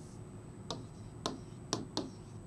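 Stylus tip tapping against a touchscreen board while digits are written by hand: four sharp, irregular clicks in the second half.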